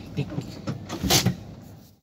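Low, steady rumble of a car heard from inside the cabin, with a short noisy burst about a second in and a few brief voice sounds.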